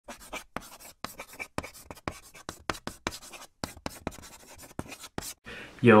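A run of quick, irregular scratching strokes with short silent gaps between them, like writing on paper; a voice says "Yo" right at the end.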